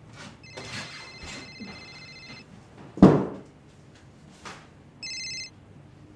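Cell phone ringtone, a set of steady high electronic tones ringing for about two seconds, then again briefly about five seconds in. A single loud thump about three seconds in is the loudest sound, with a few fainter knocks around the ringing.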